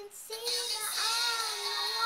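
A young girl singing a pop melody, taking a quick breath at the start and then holding long notes that bend slightly in pitch.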